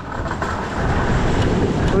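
Steady wind noise on the microphone mixed with surf washing against a stone sea wall, a fairly loud even rush with no distinct tones.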